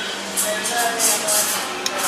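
Busy coffee-shop background: indistinct voices and light clatter of dishes over a steady hiss of room noise.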